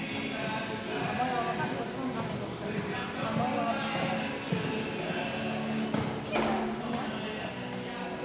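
Voices and background music carry on throughout, with hoofbeats of horses cantering on sand arena footing underneath. A single sharp knock comes about six seconds in.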